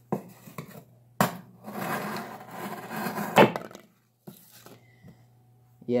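Gerber Asada folding knife's blade slicing corrugated cardboard: a couple of sharp clicks, then a scratchy cutting stroke of about two seconds that ends in a sharp snap as the blade goes through, followed by a few faint ticks.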